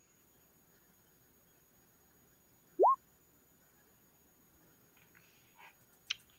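A single short bloop, one clean tone sliding quickly upward in pitch, about halfway through. Otherwise near silence, with a few faint ticks near the end.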